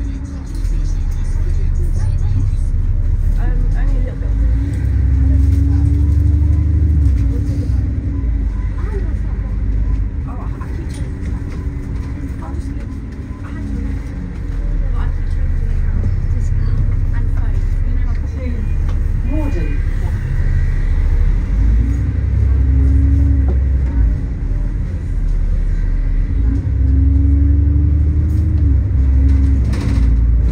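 A London double-decker bus in motion, heard from inside: a steady low rumble of the drivetrain and road, with a drive tone that climbs and then holds several times as the bus pulls away and picks up speed.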